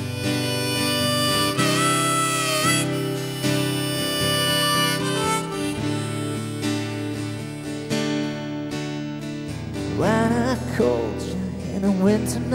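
Harmonica played in a neck rack over a strummed acoustic guitar: an instrumental harmonica break with held, slightly bending notes above steady chords.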